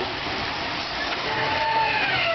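Scalextric Digital slot cars running on the track, a steady noisy whir of their small electric motors. A held, slightly falling tone comes in over it in the second half.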